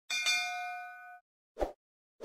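Notification-bell sound effect: a bright metallic ding struck twice in quick succession, its tones ringing out and fading over about a second. A short soft thump follows near the end.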